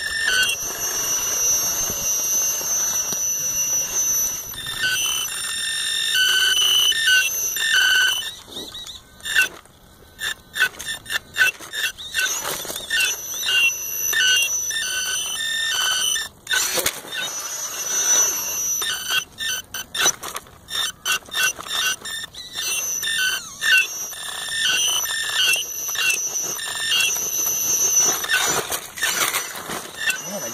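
Electric motor and gear drive of a radio-controlled rock crawler, a high-pitched whine that comes and goes with the throttle, cutting in and out in short stabs as it works over the rocks.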